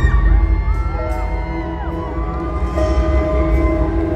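Live arena concert sound from the audience: a held synth chord over a deep bass drone, with many overlapping cheers and screams from the crowd.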